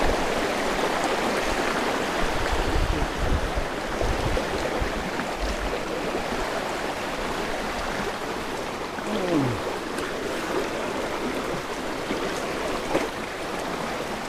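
Shallow, rocky stream rushing and splashing over stones, a steady water noise.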